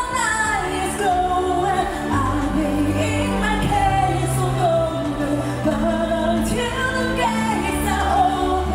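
Pop song playing: a sung vocal melody over held bass notes and a steady backing.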